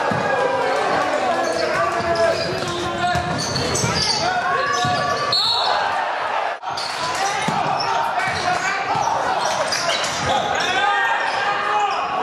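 Basketball being dribbled on an indoor court during a game, with players' and spectators' voices echoing in a large hall.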